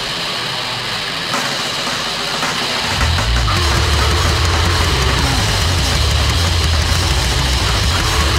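Heavily distorted goregrind, a dense wall of guitar noise and drums. For about the first three seconds the deep bass drops out, then the full band with heavy low end comes back in.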